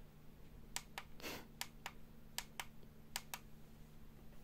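Small plastic push-buttons on a G-shaped lamp with a wireless charger and clock clicking as they are pressed, in four quick double clicks spaced under a second apart, with a short rustle about a second in. A faint steady hum runs underneath.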